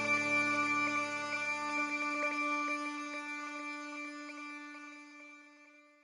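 Background music of long held tones with a few light plucked notes, fading out steadily.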